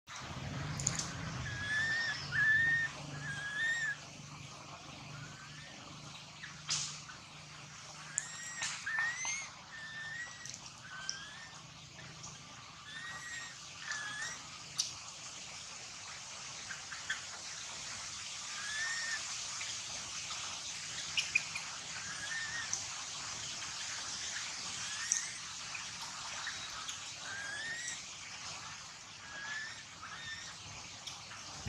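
Short, high, whistle-like animal chirps, each rising then dipping, repeated in small groups of two or three over a steady high hiss of outdoor ambience.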